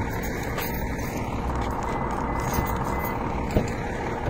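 Steady low road and engine noise of a car driving, with a single short click about three and a half seconds in.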